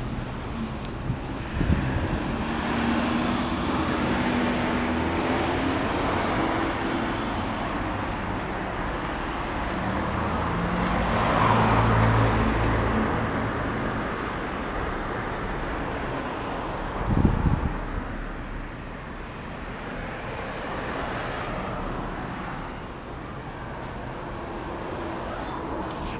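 Road traffic passing close by: cars swell and fade as they go past, the loudest pass coming about halfway through. Two short knocks occur, one near the start and one about two-thirds of the way in.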